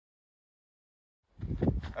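Dead silence for over a second, then the audio cuts in and a man starts speaking near the end.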